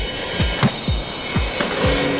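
Music with a steady drum beat: a kick drum about twice a second under a cymbal wash and a few sharp snare hits.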